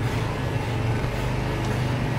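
Corded electric pet clipper running with a steady low buzz while shaving a Shih Tzu's coat.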